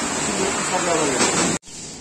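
Steady loud hiss of a bench polishing wheel working the face of a scooter variator pulley, with a man speaking over it. The hiss cuts off suddenly about a second and a half in.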